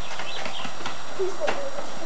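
A basketball bouncing on a concrete driveway out of sight: two faint sharp knocks about a second apart over a steady hiss.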